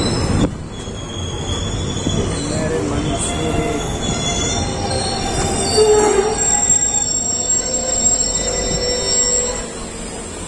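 Passenger train slowing to a halt, with high steady squeals from its braking wheels over a low rumble of the running gear.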